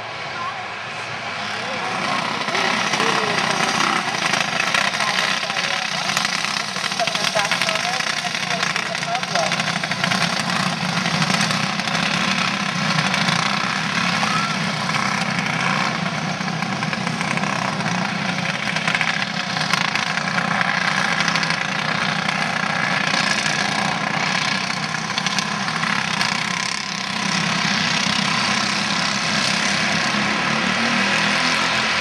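Several racing kart engines running at speed as sprint karts lap the track, their overlapping engine notes blending into one continuous, loud sound. It swells over the first couple of seconds and dips briefly near the end.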